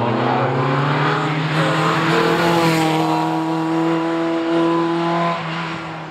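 Formula Opel Lotus single-seater racing car accelerating out of a tight bend. The engine note climbs over the first couple of seconds, holds high and steady, then fades near the end as the car pulls away.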